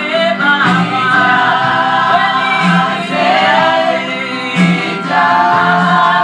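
Gospel song with a choir of voices singing over a held low accompaniment and a steady beat about once a second.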